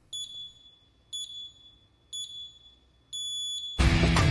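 Four high-pitched electronic beeps, one a second: the first three are short and the fourth is held longer, a countdown pattern like radio time-signal pips. Music with guitar starts loudly just after the last beep begins.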